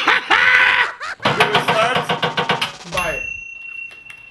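A man's drawn-out open-mouthed shout, then excited shouting and laughter. Near the end a steady high tone sets in.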